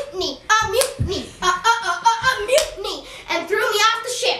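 A boy's voice rapping quickly, with a few hand claps.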